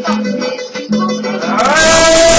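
Two acoustic guitars strummed in a steady rhythm. About a second and a half in, a loud, drawn-out shouted voice breaks in over them.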